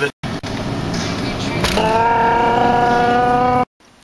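A car driving, heard from inside the cabin as a steady road and engine noise. From about halfway in, a steady pitched tone is held for about two seconds, and then the sound cuts off abruptly.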